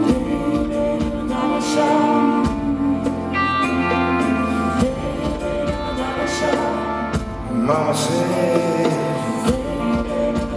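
Live rock band playing a song, with a male lead vocal and female backing singers.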